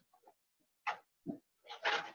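Bible pages rustling in a few short bursts as they are leafed through, the loudest rustle near the end.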